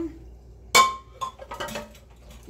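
A single sharp clink of kitchenware about three quarters of a second in, ringing briefly, followed by a few lighter clicks and knocks.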